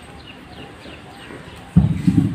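Handheld wired microphone being handled: a sudden loud low thump and rumble near the end. Before it there is a faint background with quiet, repeated high chirps.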